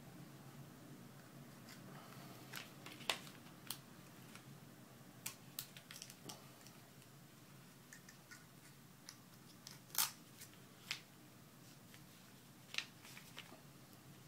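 Plastic pry tool clicking and scraping against an iPod Touch as its glued-down LCD is pried up from the frame: faint, irregular small clicks, the loudest about ten seconds in.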